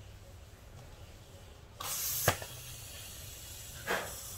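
A CO2 inflator blasts gas into a tubeless road tyre: a sudden loud hiss about two seconds in, broken by a sharp crack typical of the tyre bead snapping onto the rim. A weaker hiss then carries on, with another short loud burst of gas near the end.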